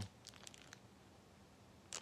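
Faint rustling of a vinyl LP being slid out of its sleeve, a few soft crinkles in the first second and one more near the end, over near silence.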